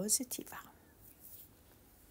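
A few soft spoken syllables that end about half a second in, then quiet room tone.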